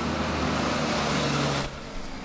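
Street traffic noise: a steady hiss of passing cars with a low engine hum, cutting off suddenly near the end.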